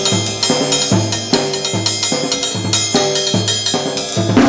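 Drum kit played in a steady jazz pattern: a low drum note about every 0.8 seconds under repeated ringing strikes on metal.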